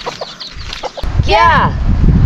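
A chicken clucking briefly, then giving one loud squawk that rises and falls, a little after a second in, over a low rumble.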